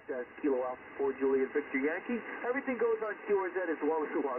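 A voice received on the air by a Yaesu FTDX10 HF transceiver, heard through the radio's built-in speaker with its audio bass gain turned up. The audio is narrow, with no highs at all.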